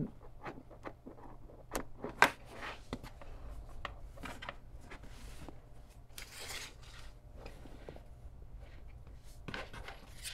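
Handling noise from cables, a DC barrel plug and small circuit boards moved about on a tabletop: light scattered clicks and rubbing, with two sharper clicks a couple of seconds in.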